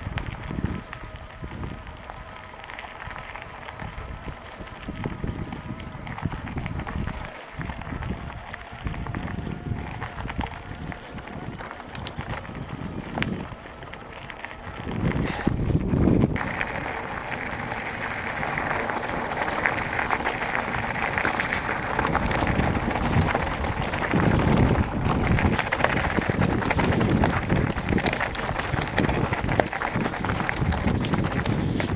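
Mountain bike rolling fast down a dirt forest track: tyres on gravel, frame rattle and wind buffeting the camera microphone. About halfway through it turns louder and harsher as the bike runs onto loose stones.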